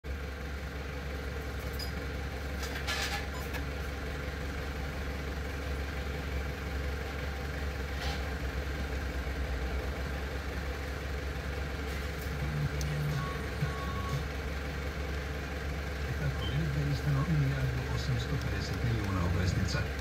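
Steady low drone of a vehicle idling, heard inside the cabin, with a few sharp clicks as the head unit's buttons are pressed. About two-thirds of the way through, a voice from the car radio comes in and grows louder toward the end as the volume is turned up.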